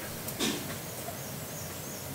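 Quiet outdoor ambience with a single knock about half a second in, and faint high bird chirps in the second half.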